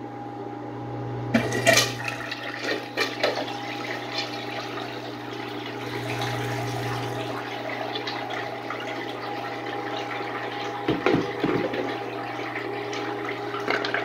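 A miniature model toilet flushing, its water swirling around the bowl and draining down the hole. There are sharper splashes about a second and a half in and again about eleven seconds in, over a steady hum.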